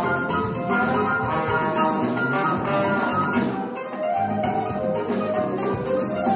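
Live Brazilian instrumental band playing: a trumpet melody over plucked strings (mandolin and acoustic guitar), electric bass, drum kit and hand percussion.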